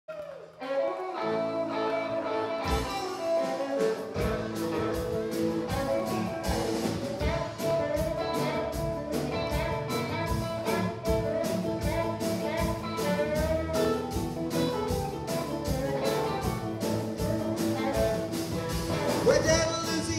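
Live rock-and-roll band with electric guitars, bass, keyboard and drum kit playing a song's opening. Pitched instruments start it off, the drums come in after a few seconds, and then the full band plays on a steady, driving beat.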